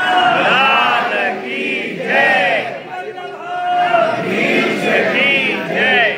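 A crowd of voices chanting together in rising and falling phrases, many voices overlapping.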